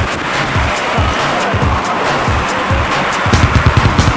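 Background music with a steady drum beat; the beat grows busier and heavier about three seconds in.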